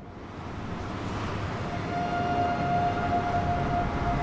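A rush of noise that builds steadily, with a steady high tone joining about two seconds in: an edited transition sound effect leading into a title card.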